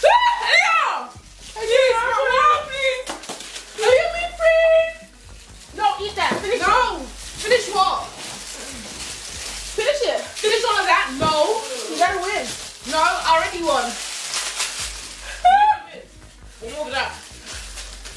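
Young women's voices: indistinct exclamations and talk in short bursts.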